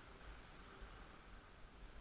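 Near silence: faint outdoor background noise with a low rumble on the microphone.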